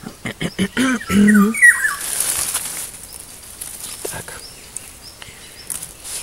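Crackling rustle of stinging nettle leaves and stems being picked and handled by hand, a quick run of clicks and snaps in the first second, with a few short bird chirps.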